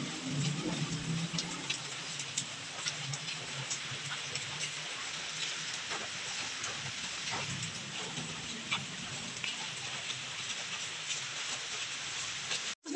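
Kitchen knife slicing red bell pepper on a plastic cutting board: scattered, irregular light knocks of the blade. A steady hiss lies under the cuts.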